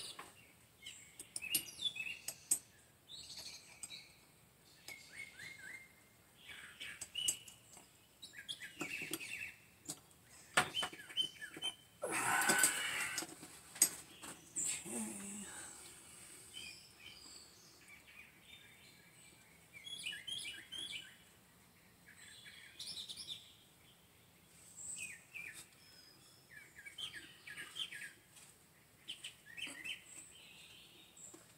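Birds chirping faintly in the background, with short scattered calls throughout. About twelve seconds in there is a louder burst of noise lasting about two seconds.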